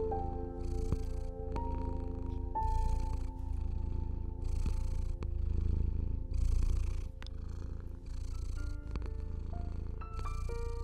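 A domestic cat purring steadily, the purr swelling and fading every second or two with its breathing, under slow, soft piano notes.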